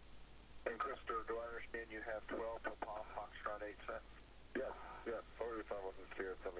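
A voice talking over the spacewalk's radio link, thin and band-limited like a radio transmission, with a short pause about four seconds in.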